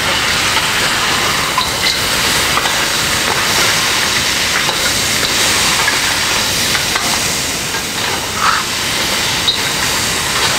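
Chicken and frozen vegetables sizzling loudly in a very hot wok, a steady hiss as the moisture from the frozen vegetables flashes to steam. Now and then the metal wok spatula gives a light scrape or tap as it stirs.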